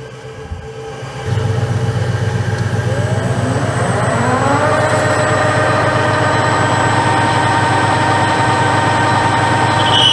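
Metal lathe switched on: a steady low motor hum comes on about a second in, and a whine rises in pitch over the next few seconds as the spindle comes up to speed, then runs steadily.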